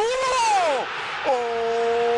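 Football TV commentator's wordless shout as a penalty goes in: a high cry rising and falling, then from about a second in one long note held steady, over a stadium crowd cheering.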